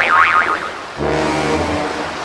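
Cartoon sound effects for an animated penguin's leap and belly landing: a wavering high tone that wobbles up and down in pitch for about half a second, then about a second in a low buzzing tone that lasts nearly a second, over a steady surf-like wash.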